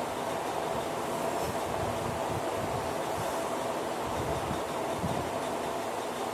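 Steady hum of an electric fan or cooling unit, holding one constant tone, with a few soft low knocks in the middle as a marker writes on a whiteboard.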